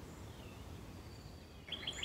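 Quiet outdoor background noise with a faint bird chirp about half a second in.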